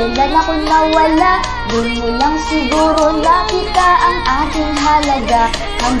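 A Spanish-language song playing, a high-pitched vocal singing a wavering melody over a steady backing track.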